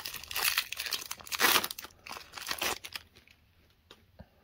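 Foil booster-pack wrapper of Pokémon trading cards being torn open and crinkled by hand: a run of crackling tears, loudest about one and a half seconds in, stopping about three seconds in.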